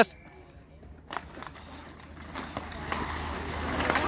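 Ice hockey on an outdoor rink: sticks clacking and skates scraping on the ice, with a sharp clack about a second in and a few lighter ticks after it. The rink noise grows louder toward the end.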